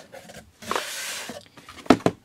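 Boxed software packages rustling and scraping against a cardboard shipping box as they are lifted out, then one sharp knock near the end as the stack is set down on the desk.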